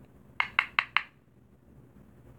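Four quick, sharp taps in a row, about five a second, of a makeup brush knocked against a loose-powder container to shake off excess powder.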